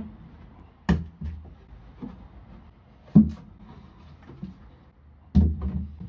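An OSB wooden box being handled and set down on a wooden bench: three sharp knocks, about a second in, around three seconds and just past five seconds, the middle one the loudest, with a few smaller bumps after the last and quiet rustling between.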